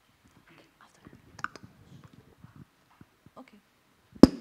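Faint, low murmur of voices away from the microphones, with a single light click about one and a half seconds in.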